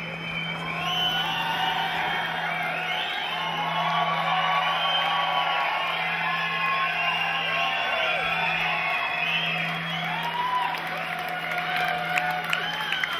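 Math rock band playing on stage: a steady low droning note with many warbling, gliding high-pitched lines layered over it.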